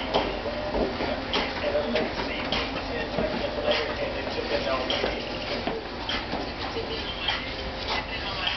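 Indistinct voices of people talking, with scattered short knocks and taps.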